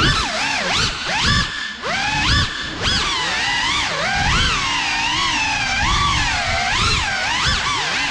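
Cinewhoop FPV drone's brushless motors and ducted propellers whining, the pitch swooping up and down again and again as the throttle changes.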